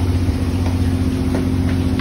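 Steady low hum of a skipjack fishing boat's onboard engine machinery running, several even tones held throughout, with a couple of faint taps.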